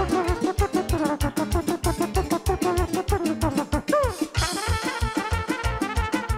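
A live band with a steady drum beat backs a duet between a trumpet and a man imitating a trumpet with his voice into a handheld microphone. About four seconds in a note slides down, then a brighter, fuller brass line comes in.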